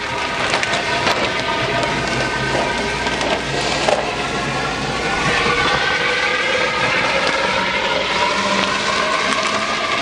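Steady rush of water running through a half-inch solenoid valve and flow meter into a PVC water silo, refilling it after a dump of substrate and water.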